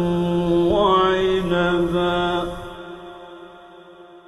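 A male Quran reciter's voice chanting in the melodic mujawwad style, drawing out one long ornamented note that steps up in pitch about a second in. The voice stops a little under three seconds in, leaving an echo that fades away.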